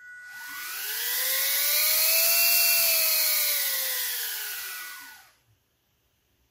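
Small DC motor spinning a plastic propeller as a potentiometer sets its speed: its whine rises in pitch as it speeds up to a peak about halfway, then falls as it slows and stops a little after five seconds in. A faint steady high whine runs alongside.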